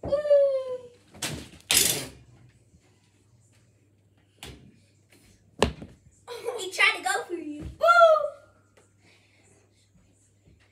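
A child's voice making a wordless cry that falls in pitch, then a breathy burst, a few sharp knocks, and more excited wordless child vocalising ending in another falling cry.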